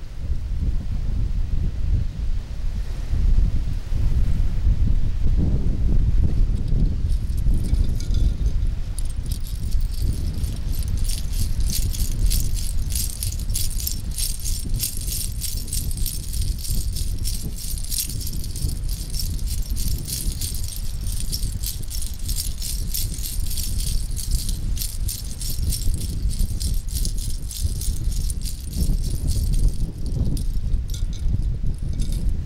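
A hand-held strung rattle of small shells or seed pods shaken in a fast, continuous rustling rhythm, starting about seven seconds in. Strong wind rumble on the microphone runs underneath.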